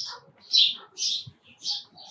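A bird chirping over and over, short high calls about two a second.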